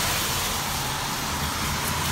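Steady hiss of car tyres on a rain-wet street, with a low rumble of passing traffic.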